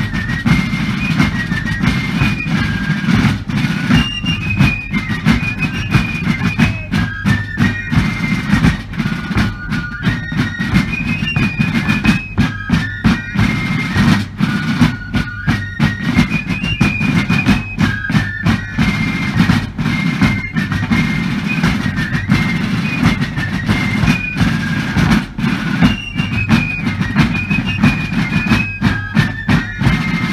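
Massed fifes and field drums playing a march together: a shrill, high fife melody over rapid, steady drum strokes.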